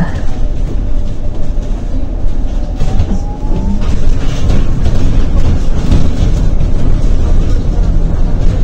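Cabin noise inside a moving Zhongtong N12 battery-electric city bus: a steady low rumble from the road and the bodywork. About three seconds in, a faint whine rises in pitch as the electric drive motor speeds up.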